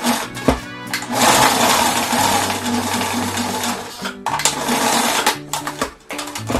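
Janome electric sewing machine stitching in fast, steady runs from about a second in, with a brief stop just past four seconds, over background music.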